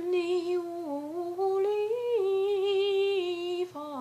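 A woman singing unaccompanied in a slow melody of long held notes that step up and then back down in pitch, with a short break just before the end.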